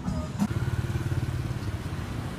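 A motorcycle engine running close by with a fast, steady pulsing, starting abruptly about half a second in.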